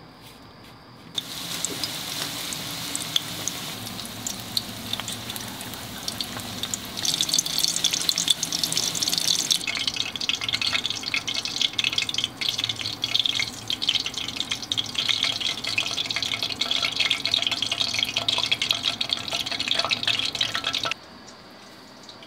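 Breaded patties deep-frying in hot oil: a dense sizzle and crackle that starts about a second in, grows louder a few seconds later, and cuts off abruptly near the end.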